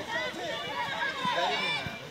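Several high-pitched voices shouting and calling over one another, with no clear words, from players and onlookers at a field hockey match.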